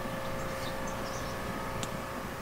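Steady background mechanical hum: a low rumble carrying several faint steady tones, with one brief click near the end.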